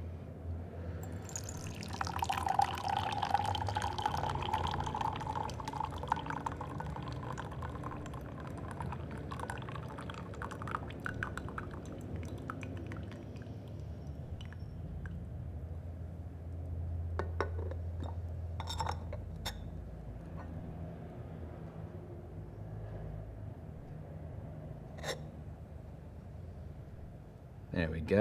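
Brewed tea poured in a thin, slow stream from a small clay pot into a glass fairness pitcher (gongdaobei), trickling for about twelve seconds and then thinning to drips. A few light clinks of teaware come in the second half.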